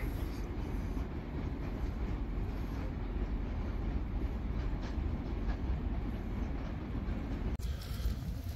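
Steady low rumble of wind buffeting the microphone outdoors, with no other distinct sound, breaking off suddenly near the end.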